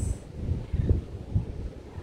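Wind buffeting the microphone in irregular gusts, a low rumble.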